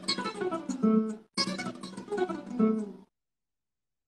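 Classical guitar playing a quick run of single plucked notes, with a brief break about a second in; the playing cuts off abruptly about three seconds in.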